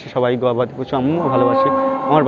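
A cow mooing, one steady held call starting about a second in, over a man's voice.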